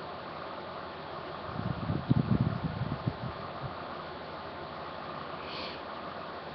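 Room fan running with a steady, even hiss. A brief patch of low bumps and rustling comes from about one and a half to three and a half seconds in.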